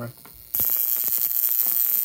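Violet wand with a glass mushroom electrode discharging onto the skin of a hand: a loud electrical buzz with dense crackle of tiny sparks, starting suddenly about half a second in once the electrode reaches the skin.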